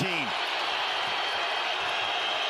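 Steady crowd noise from a full basketball arena, an even hubbub with no single standout event.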